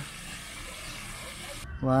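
Fountain jet spraying and splashing into a pond: a steady rushing hiss that cuts off suddenly about three quarters of the way through.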